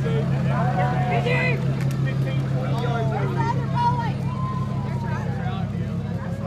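Pickup truck engine running steadily at low speed as it tows a parade float past, easing off slightly near the end, under overlapping voices of people talking and calling out.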